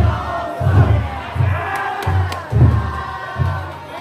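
Deep beats of a taikodai float's big taiko drum, roughly two a second, under a crowd of carriers shouting and chanting together.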